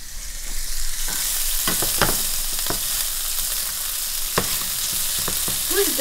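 Chopped leftover steak sizzling in a frying pan as it is warmed. The sizzle builds about a second in, with a few sharp clicks of a spatula against the pan.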